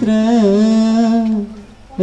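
A man's unaccompanied voice singing one long held note of a chanted line of verse, nearly level in pitch. It fades out about a second and a half in.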